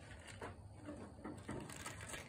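A few faint, light clicks as hands work a stuck valve in a small engine's cylinder head.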